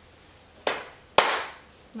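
Two sharp hand claps about half a second apart, the second louder: a sync clap, made so the audio track can be lined up with the picture.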